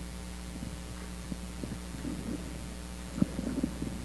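A steady low electrical hum with faint rustling and a few soft knocks. A sharper thump and a short cluster of knocks come about three seconds in.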